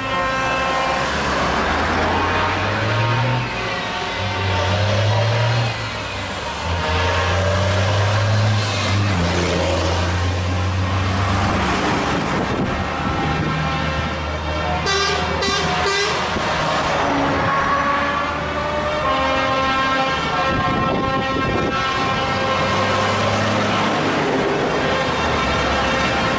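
A convoy of tow trucks and a heavy truck pulling a low-loader trailer drive past, their engines running with a deep rumble that is strongest in the first half. Horns sound repeatedly in long steady tones through most of the stretch, and a short burst of sharp clicks comes about fifteen seconds in.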